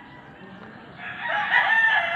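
A rooster crowing: one long, drawn-out crow that begins about a second in.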